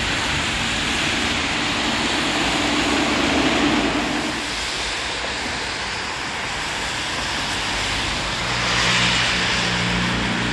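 Street traffic: cars passing on a wet, slushy road, the tyre noise swelling as each goes by, about midway and again near the end. A steady low engine hum comes in near the end.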